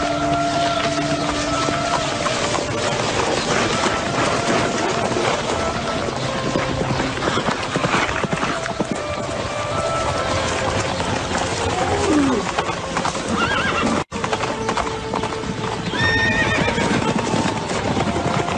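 Many horses' hooves pounding the ground, with horses whinnying, over film score music. The sound drops out for an instant about fourteen seconds in.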